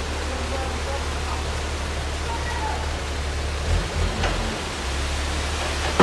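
Dump truck tipping a load of asphalt off its raised bed: a steady rushing of the material sliding and pouring onto the road, over the low, even hum of the truck's engine.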